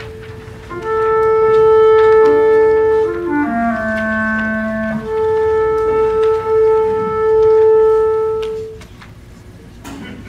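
Two flutes playing long held notes: one note sustained, then a short passage in two moving parts, then the first note held again until it stops near the end.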